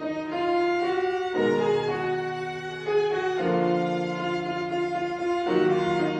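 Two violins and a grand piano playing a chamber arrangement of a pop song live, with held bowed notes over piano chords that change about every two seconds.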